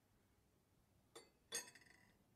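A metal spoon lowered into a glass of water: a faint tap, then, about one and a half seconds in, a clink against the glass that rings briefly.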